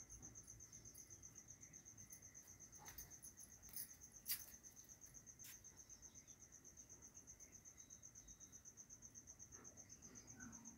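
Faint, high-pitched chirping that pulses rapidly and evenly at one pitch, with a few soft clicks, the sharpest about four seconds in.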